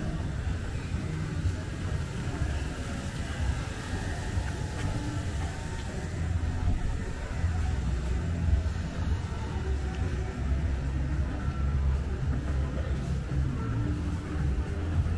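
Busy night-street ambience: a steady low rumble of traffic mixed with the bass of music playing from bars.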